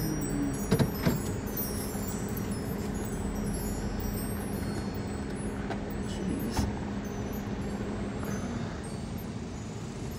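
Car engine idling steadily, heard from inside the cabin, with a few sharp clicks (around a second in and again after six seconds) and faint light tinkling over it.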